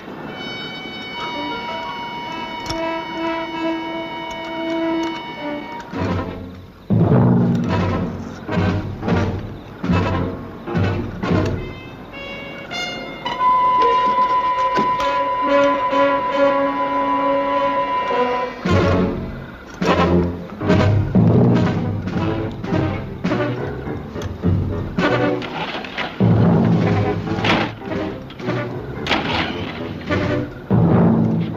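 Dramatic orchestral score: two long held brass chords, each broken off into a stretch of rapid, heavy drum and timpani hits.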